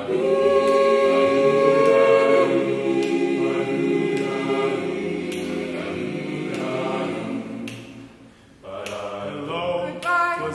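Mixed a cappella chamber choir singing held chords without clear words, loudest near the start. The voices drop to a brief hush a little past eight seconds, then come back in.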